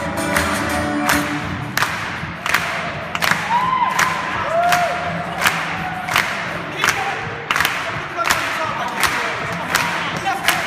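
Band music trails off in the first two seconds, then a choir and audience clap in time, about two claps a second, with cheering and a couple of whoops.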